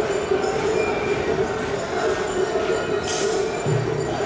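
Steady rumble of city road traffic echoing under an elevated expressway, with a constant hum running through it. A brief hiss comes about three seconds in, and a low pulsing tone begins near the end.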